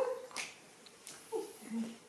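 A few short vocal calls: one falls in pitch about a second and a half in, and a low, level one follows soon after. A brief tap comes about half a second in.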